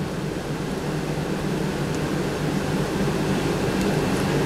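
Steady low hum and hiss of an air conditioner running in a meeting room.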